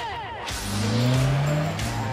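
Mercedes-Benz C-Class car engine accelerating, its note rising steadily from about half a second in. A short falling tone comes just before, and music plays underneath.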